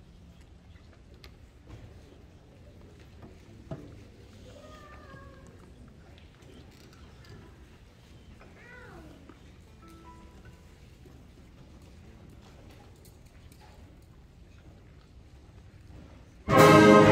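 Hushed auditorium with faint room noise from a waiting audience and band, a single sharp knock about four seconds in, and a few faint, high, sliding squeaky sounds around the middle.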